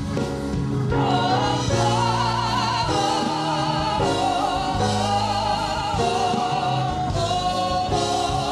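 Church praise team of men and women singing a gospel song into microphones, a wavering lead voice held high over steady lower notes.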